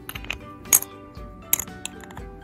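Two sharp clicks of small plastic doll-accessory pieces being handled, the louder about three-quarters of a second in and another about halfway, with a few lighter ticks, over steady background music.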